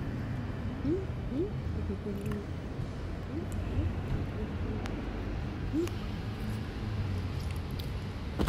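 Steady low background rumble, with faint distant voices now and then.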